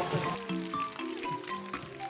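Electronic game-centre music: a simple synthesized melody of held notes stepping in pitch, with the crane machine's claw carrying its prize.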